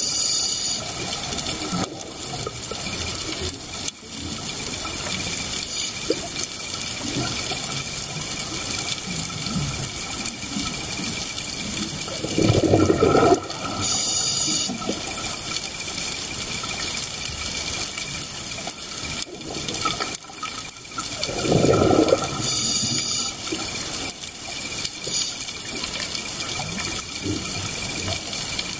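Scuba diver's breathing heard underwater: exhaled air bubbling out in rumbling bursts about every nine seconds, each paired with a short hiss of inhalation through the regulator, over a steady watery hiss.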